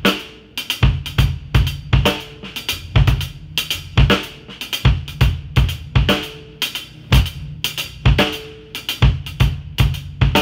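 Drum kit groove: quick double strokes (diddles) on the hi-hat, with snare hits and a bass drum pattern laid as a three-over-four cross-rhythm, played in four. Heavy kicks and ringing snare strokes keep a steady pulse throughout.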